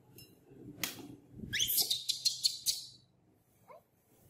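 Baby monkey squealing: a rising squeal breaks into a quick run of shrill squeaks lasting over a second, with a short faint squeak near the end. A single knock comes about a second in.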